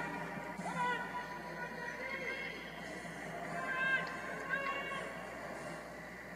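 Spectators' voices in a large hall: a few short, high, rising-and-falling calls over a background murmur, about four in all.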